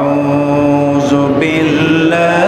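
A man reciting the Quran in Arabic in a melodic chant, holding one long note, then moving to a new, brighter note about one and a half seconds in.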